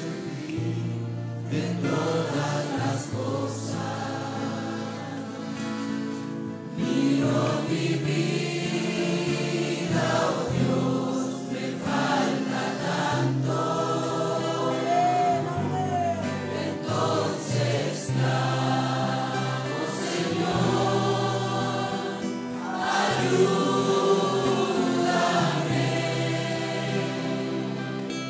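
A congregation singing a Spanish-language worship song together over steady held bass notes, swelling louder twice.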